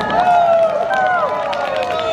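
Several voices calling out together in long cries that fall in pitch, with scattered sharp clicks under them.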